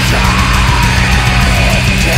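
Black metal music: a dense, loud wall of distorted guitars over fast, relentless drumming.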